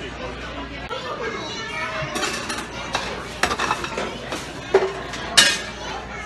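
Busy restaurant din: background voices and children's chatter, with ceramic dishes and chopsticks clinking. A few sharp clinks come in the second half, and the loudest, a ringing one, comes near the end.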